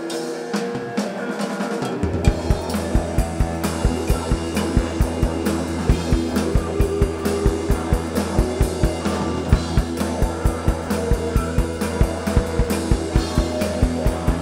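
A live psychedelic rock band playing, with electric guitar sustaining chords. About two seconds in, a steady kick-drum beat and a held low bass note come in.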